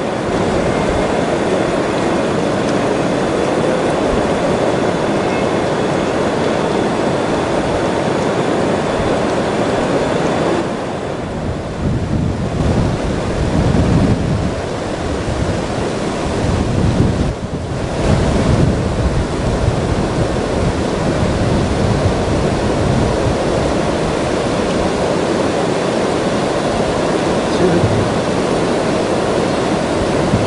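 Fast-flowing river current, a steady rush of water. For several seconds in the middle, wind buffets the microphone with an uneven low rumble.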